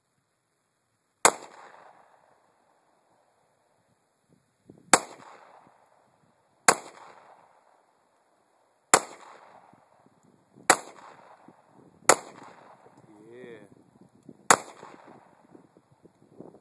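Seven .45 ACP pistol shots from a 1911, fired one at a time at uneven intervals of about one and a half to three and a half seconds, each shot followed by a short echo.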